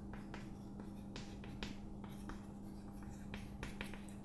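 Chalk writing on a blackboard: a run of short, irregular scratches and taps as words are chalked, over a steady low hum.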